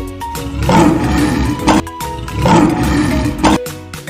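A growling animal roar sound effect for a cartoon bear, heard twice, each about a second long, over bright children's background music.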